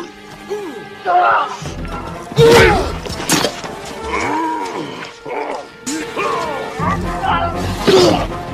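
Action-film battle soundtrack: a music score mixed with yelling voices and sharp impacts. The loudest strikes come about two and a half and three and a half seconds in, and a heavy rumble builds near the end.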